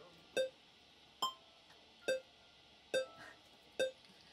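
Electronic metronome click beating steadily, five sharp ticks with a short pitched ring about 0.85 s apart, roughly 70 beats a minute: a tempo being set for the next piece.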